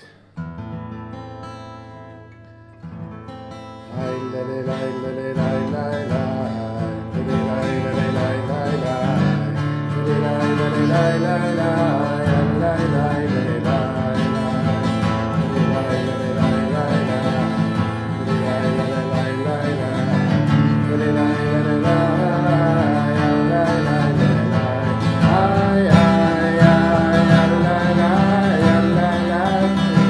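Steel-string acoustic guitar: a chord strummed and left to ring, another about three seconds in, then steady strumming from about four seconds in. A man sings along over the guitar.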